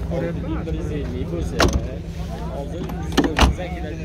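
A car door is shut with a sharp knock about one and a half seconds in, then two more quick knocks close together near the end, over men's voices in the background.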